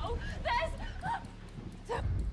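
Horror movie trailer soundtrack: a woman's short, high-pitched cries, several rising and falling, over a steady low drone.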